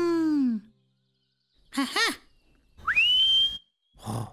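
Cartoon sound effects: a short voiced sound falling in pitch at the start and two brief voiced syllables about two seconds in. Then the loudest sound, a whistle that slides quickly up and holds one steady high note near the end.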